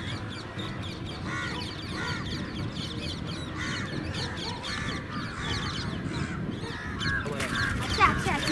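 Birds calling: a call repeated every second or so, with many smaller chirps around it and a low steady background.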